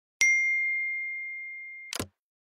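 A single bright bell-like ding, struck once and ringing on as it slowly fades, cut short near the end by a brief burst of noise as the logo card comes up.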